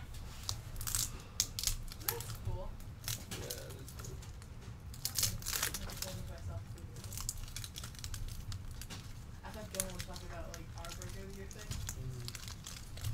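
Cellophane wrapper of a 1981 Topps football cello pack crinkling and crackling as it is worked open by hand, in irregular short crackles.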